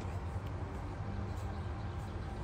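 Steady low outdoor background rumble with no distinct event.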